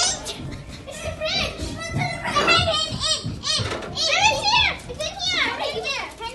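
A group of children shouting and calling out excitedly over one another, their high voices overlapping, with no clear words.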